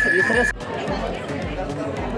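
Crowd of people talking and calling out over one another, with a regular low thud about three times a second. A steady high whistling tone cuts off suddenly about half a second in.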